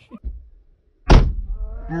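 A football striking the side panel of an SUV with a single loud, sharp thunk about a second in. The hit is hard enough to dent the door.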